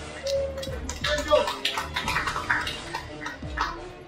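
Indistinct voices of people talking in a room over background music, with scattered light clicks.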